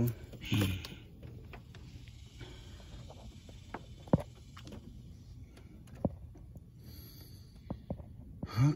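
Handling noise from a phone held in the hand with fingers over it: a low rumble with a few sharp clicks, the strongest about four seconds in.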